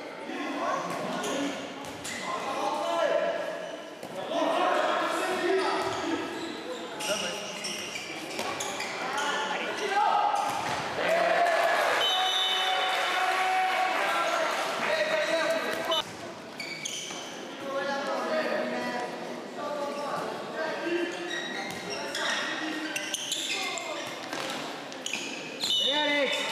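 A handball bouncing on the wooden floor of a sports hall as it is dribbled and passed. Players' shouts and voices echo through the large hall around it.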